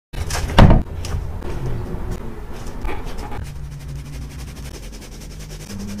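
Powdered gym chalk being sifted through a fine mesh kitchen sieve. A loud knock comes about half a second in and a softer one near three seconds, then the sieve is shaken in a rapid, even rhythm of about ten strokes a second.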